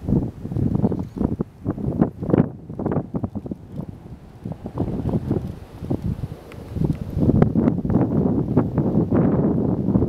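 Wind buffeting the camera microphone in uneven gusts, a low rumbling flutter that grows stronger in the last few seconds.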